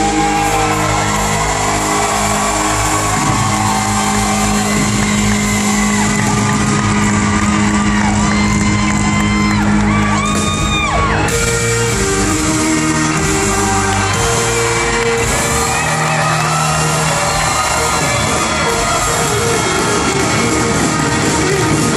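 A live country band playing loudly with a lead singer, heard from within the audience in a large concert hall.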